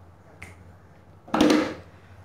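A mostly quiet room with a faint click about half a second in, then a short, sharp snapping sound about a second and a half in.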